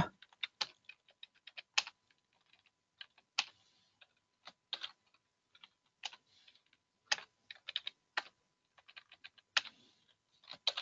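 Faint typing on a computer keyboard: single keystrokes and short quick runs of keys, spaced irregularly with pauses between.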